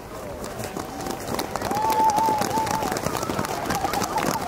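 Voices of people in an outdoor crowd, with one high, drawn-out, wavering call about halfway through, over a scatter of short clicks.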